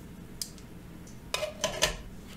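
Bestech Vigil titanium folding knife set down on the stainless-steel platform of a digital kitchen scale: a faint tick, then a quick cluster of metallic clinks about one and a half seconds in as it settles.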